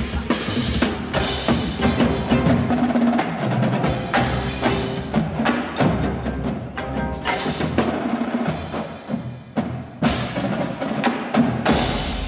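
Indoor marching percussion ensemble playing: the battery's snare, tenor and bass drums drive dense, rapid rhythms, dropping briefly about nine seconds in before a burst of loud hits.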